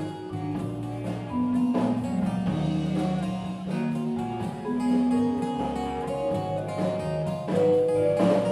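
Live rock band playing an instrumental passage with no singing: electric guitars holding notes over bass and drum kit.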